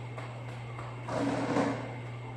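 A small stool scraping briefly across a hard floor for about half a second, a little past the middle, over a steady low hum.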